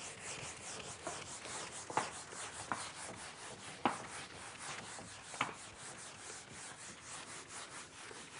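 Rubbing strokes on a whiteboard as it is worked by hand, with a few sharper strokes standing out.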